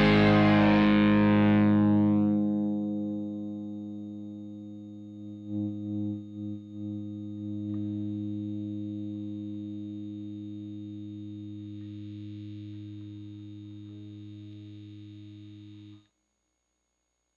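The last chord of a rock song on distorted electric guitar, left to ring and slowly die away. Its bright upper wash fades within the first two seconds, and the sustained low notes waver briefly about five seconds in before fading on.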